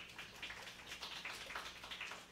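Scattered hand-clapping from a small audience: a quick irregular patter of claps following the end of a talk.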